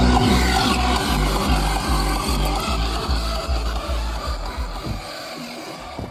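Music with a heavy, regular bass beat played through a car audio system's Ground Zero GZHW 30X 12-inch subwoofer. The bass stops about five seconds in and the music fades away near the end.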